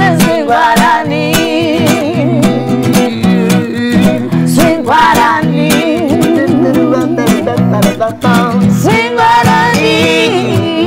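Live acoustic performance: a nylon-string classical guitar strummed in a swing style, with a woman singing with a wide vibrato and a man's voice joining in.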